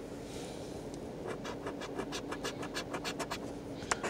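A coin scratching the coating off a scratch-off lottery ticket in a quick run of short, even strokes, starting about a second in, with a sharp click just before the end.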